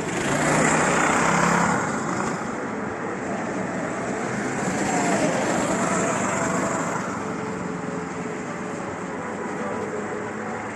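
Go-kart engines running as karts drive round a wet track, loudest during the first two seconds as one passes close by. Around the middle an engine's pitch rises and falls as a kart accelerates and slows through the corners.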